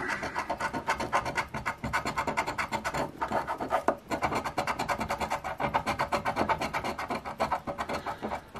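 A coin scratching the coating off a lottery scratch-off ticket: quick back-and-forth strokes, many a second, with a couple of brief breaks about three and four seconds in.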